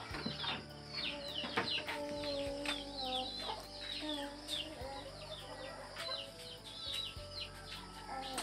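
Birds chirping: many short, high calls that fall in pitch, several a second, over some lower held notes.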